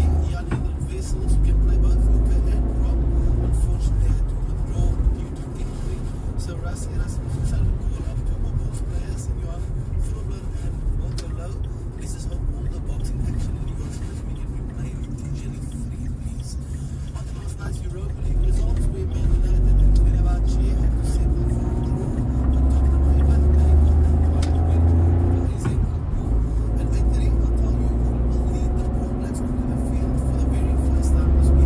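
Inside a moving car: low engine and road rumble, quieter through the middle and building again after about 19 seconds, with a car radio's voices and music playing underneath.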